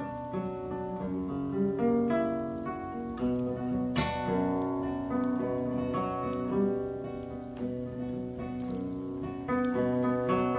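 Classical guitar playing an instrumental passage of plucked notes and chords that ring and fade, with one strongly struck chord about four seconds in and the playing growing louder near the end.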